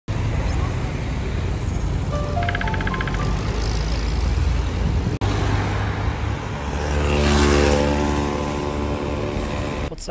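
City street traffic: cars and small taxis driving past, with a steady low rumble and one vehicle passing close, loudest about seven and a half seconds in. Music plays over it: a short rising run of notes about two seconds in, and a held chord in the second half.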